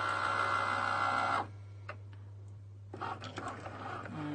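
A Cricut cutting machine's motors give a steady whine as it feeds the mat and moves the pen carriage, stopping about a second and a half in. After a short lull, clicks and brief motor runs start again near the end.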